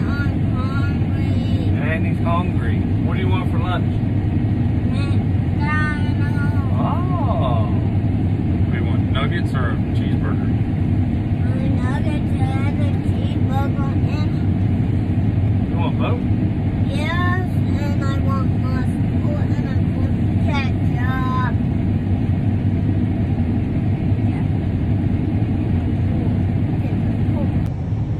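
Combine harvester running steadily, heard from inside its cab as a constant low drone. Bits of muffled talk come and go over it.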